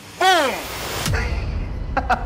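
A short, loud, falling voice-like sound, then a sudden hit about a second in that settles into a low rumble: a dramatic explosion-style sound effect following the spoken ticking of a bomb timer.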